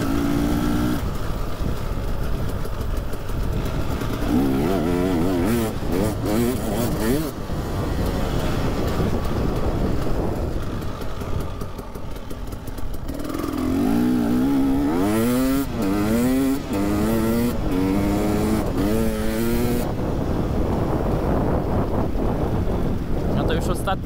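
KTM EXC 300 single-cylinder two-stroke enduro engine under way, its pitch climbing and dropping again and again as the bike accelerates through the gears, most often in the second half.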